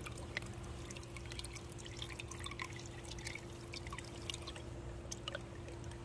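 Water swirling and trickling in a pool skimmer as a vortex turns around the Skim-A-Round basket, with a steady low hum underneath.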